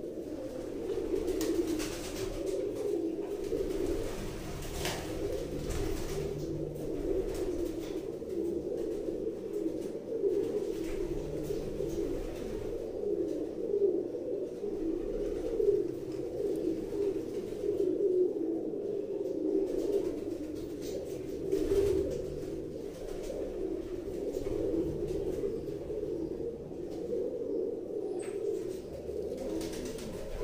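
Domestic Andhra pigeons cooing continuously, several birds overlapping, with a few short knocks now and then.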